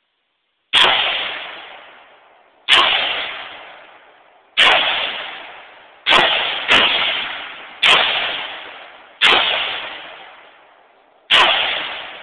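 AR-15 rifle fired eight times in slow semi-automatic fire, roughly one to two seconds apart, with two shots close together about halfway through. Each shot is followed by a ringing echo that dies away over about a second and a half.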